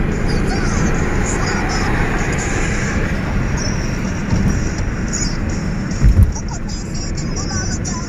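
Steady road and engine noise inside a moving car's cabin, with a short low thump about six seconds in.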